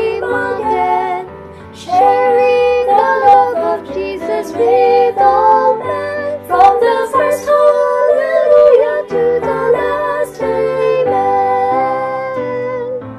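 A trio of women singing a gospel song in harmony over instrumental accompaniment, with low held bass notes under the voices.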